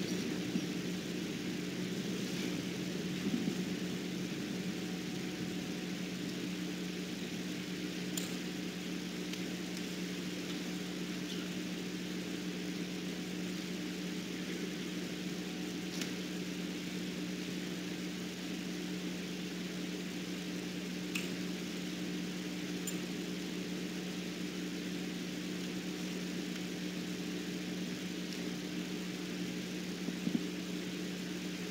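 Steady low hum made of two constant tones, with a faint hiss over it, unchanging throughout; a few faint clicks now and then. No speech: room tone of a quiet hall.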